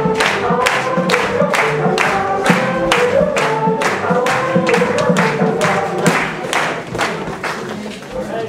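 Polish folk dance music with voices singing, a melody and a sharp, steady beat at about two to three beats a second. It grows quieter over the last two seconds.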